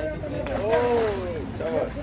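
A person's voice calling out in a long, drawn-out, rising-and-falling call about half a second in, with shorter calls near the end, over water splashing as a hooked catla thrashes at the surface and is netted.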